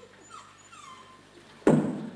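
A small dog whimpering faintly, a couple of short falling whines, followed near the end by one sudden loud sharp sound.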